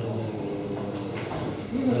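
A man speaking Slovak with hesitant pauses: only speech.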